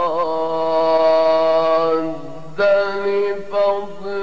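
Male Quran reciter chanting in the ornamented mujawwad style: he holds one long, steady note, then breaks off and begins a new phrase about two and a half seconds in.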